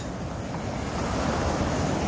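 Ocean surf washing up on the beach, a steady rush of noise, with wind blowing on the phone's microphone.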